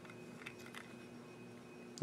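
Near-quiet room tone with a faint steady hum, and a couple of faint clicks from a plastic toy figure being handled in the fingers.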